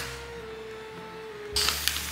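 Soft background music holding a steady note. About a second and a half in, a paper flour bag starts rustling and crinkling as its folded top is pulled open by hand.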